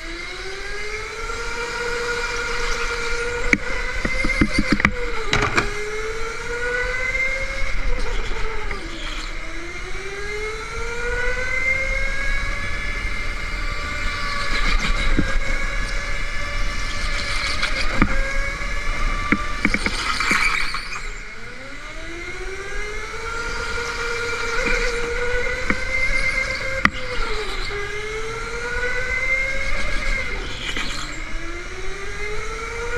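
Go-kart motor whining as the kart laps, its pitch climbing along the straights and dropping sharply four times as it slows for corners. A few short scuffs come through, at about five seconds and about twenty seconds.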